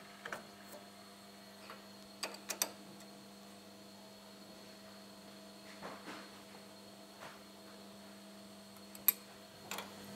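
Faint steady electrical hum with a few scattered light clicks and knocks, the sharpest about nine seconds in, from a cylinder head being set into the fixture of a valve seat machine.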